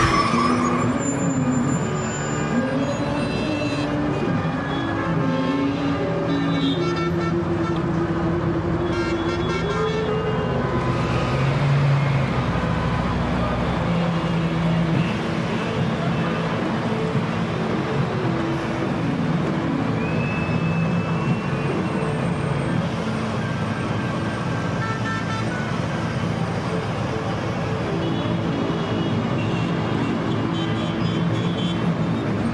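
Road traffic in a jam: car engines running steadily, mixed together into one continuous wash of noise.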